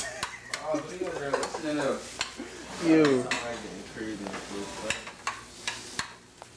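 A metal spoon stirring and scraping scrambled eggs in a frying pan, with repeated scrape and clack strokes against the pan over a sizzle. An indistinct, wavering voice-like sound runs through the middle, loudest about three seconds in.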